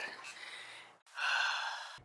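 A person's sigh: a breathy exhale starting about halfway through and fading over about a second, after a faint hiss.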